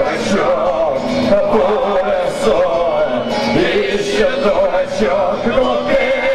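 A man singing a song live into a microphone, accompanying himself on guitar.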